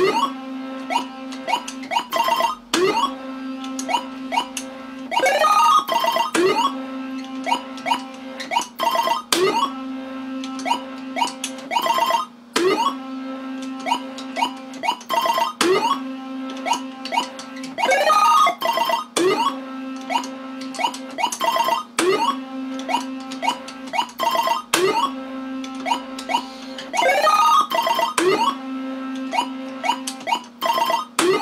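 Universal Tropicana 7st pachislot machine being played game after game: electronic chirping and beeping tones over a steady low tone while the reels spin, broken by sharp clicks, with a rising electronic sweep now and then. The cycle repeats about every three seconds.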